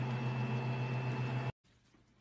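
A steady hum with a low drone and a thin, high, steady tone above it, cutting off abruptly about one and a half seconds in; faint room tone follows.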